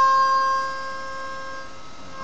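Nickel-plated diatonic harmonica in C holding one long note that slowly fades away at the end of a phrase.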